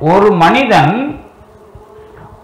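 A man's voice speaking through a microphone for about a second, then a short pause.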